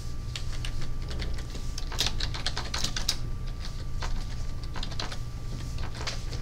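Irregular clicking of typing on a computer keyboard, over a steady low hum.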